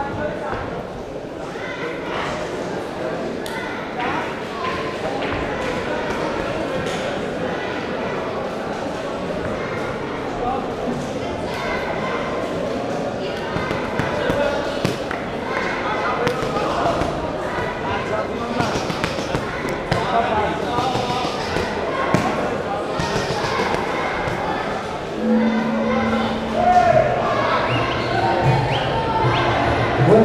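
Many voices calling out and talking, echoing in a large sports hall, with scattered sharp thuds and slaps of kicks and punches landing in a Muay Thai bout.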